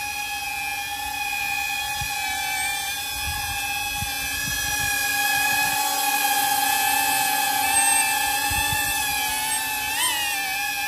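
DJI Avata FPV drone hovering on Master Airscrew three-blade replacement propellers: a steady, high, multi-toned propeller whine that wavers slightly in pitch and gets a little louder in the middle.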